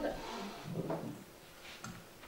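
A voice trails off in the first second, then a table microphone is handled, with soft rustle and a few sharp clicks near the end.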